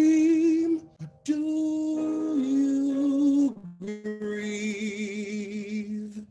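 A man singing long held notes with vibrato over a recorded instrumental backing track, in three phrases with short breaths between them.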